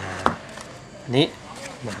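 A single sharp knock of a hard object against the workbench, about a quarter second in, between a man's spoken words.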